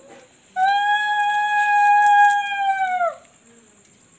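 Conch shell (shankha) blown in one long, steady note of about two and a half seconds, its pitch sagging as it cuts off.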